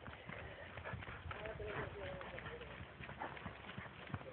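Faint, soft hoofbeats of a horse cantering on the sand footing of a riding arena.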